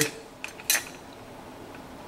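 A light click and then a sharper, louder clack a moment later as the metal stirrer blade is handled in the plastic microwave stirrer cover, followed by faint ticks.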